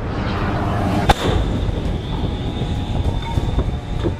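Missile rocket motor at launch, a continuous rumbling roar, with a single sharp bang about a second in.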